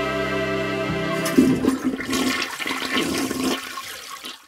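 Intro music ends about a second in and gives way to a toilet flushing: a loud rush of water that thins out and fades away near the end.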